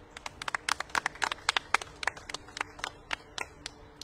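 Scattered applause from a small group of people: irregular hand claps, densest in the first two seconds and thinning out toward the end.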